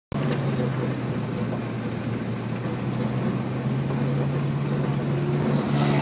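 A vehicle engine running at a steady speed, a low even hum that holds throughout, with a haze of travel noise over it.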